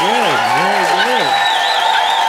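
A live audience applauding loudly and cheering to vote, with many voices whooping and shouting that rise and fall in pitch over the clapping.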